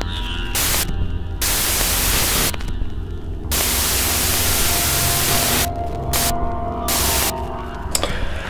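Glitchy static sound effect for a channel logo intro: bursts of loud white-noise hiss cut abruptly in and out several times over a steady low electrical hum, the longest burst in the middle.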